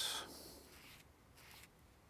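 Faint rubbing of a small sponge applicator spreading glue across a table tennis rubber sheet: a soft scrubbing hiss at the start that fades within about half a second, and another brief faint rub near the end.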